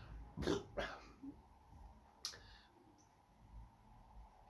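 Two short breathy sounds from a man just under a second in, then a single sharp click a little after two seconds, against a quiet room.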